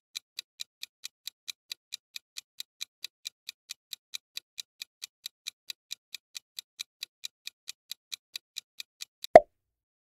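Countdown-timer sound effect ticking steadily at about four to five ticks a second, ending near the end with a single much louder pop as the time runs out.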